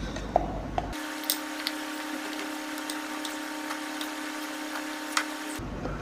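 A spoon scooping cornstarch into a plastic measuring cup: soft scraping and a few light clicks and taps, over a steady faint hum.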